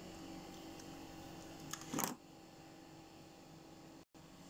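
Faint steady hum of a small cooling fan running on the oscillator's capacitor, with one brief soft sound about two seconds in.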